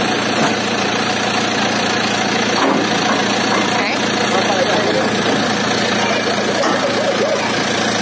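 A vehicle engine idling steadily, with people's voices talking over it.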